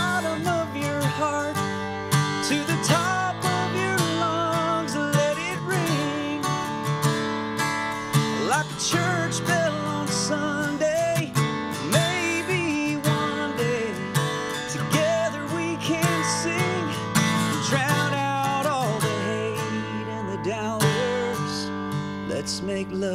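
A man singing a country song with vibrato on held notes, accompanying himself on a strummed acoustic guitar.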